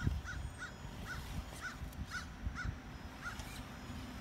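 A bird calling repeatedly: about eight short, evenly spaced calls over three seconds, stopping near the end, over a low rumble.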